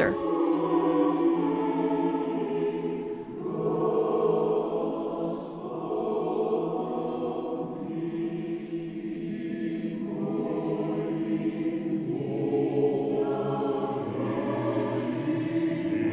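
Background choral music: a choir singing slow, held chant-like phrases in several voices, the chords changing every few seconds.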